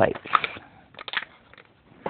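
Clear plastic knitting-machine key plates clicking and crackling as they are handled in the hand, with a few short clicks about a third of a second in and again around one second in.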